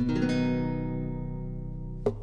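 Acoustic guitar strumming its closing chord, struck once at the start and left to ring, fading slowly: the end of the song.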